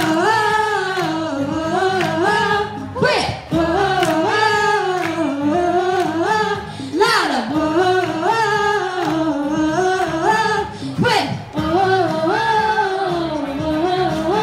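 A woman singing into a microphone, amplified through a portable speaker, in long phrases of gliding, wavering notes that break about every four seconds, over a backing track.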